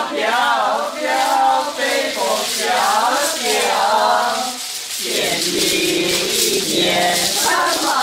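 Mahjong tiles clattering as many hands shuffle them across a tabletop, under background music with a sung melody.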